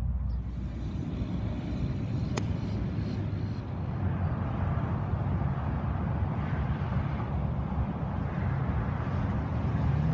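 Steady low rumble of outdoor background noise, with a single sharp click about two and a half seconds in.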